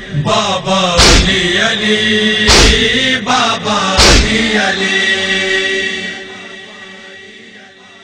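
An Urdu noha lament being chanted, with a heavy thud keeping time three times about a second and a half apart. The whole sound then fades down over the last couple of seconds.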